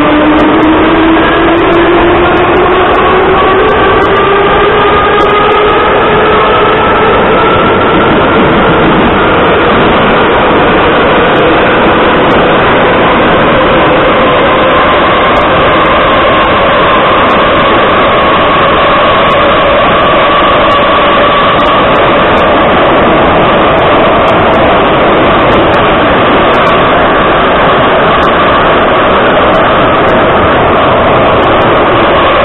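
Interior of a Soviet Ezh3 metro car running through a tunnel: the traction motor and gear whine rises in pitch for the first several seconds as the train accelerates, then holds nearly steady at running speed, over a loud rumble of wheels on rails.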